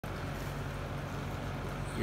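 A steady low hum with an even hiss over it, and no distinct event.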